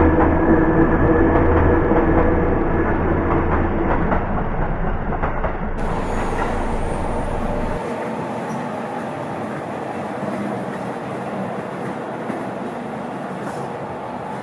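Yellow Seibu electric commuter train passing close by, with a steady motor hum over the wheel rumble, then an electric train running farther off and fading as it pulls away.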